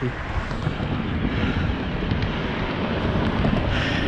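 Wind buffeting the microphone: a steady, fluttering rumble.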